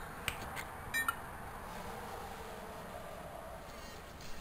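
A few sharp clicks as a 3.5 mm earphone plug is pushed into a smartphone's headphone jack, with a short beep about a second in, over a steady hiss.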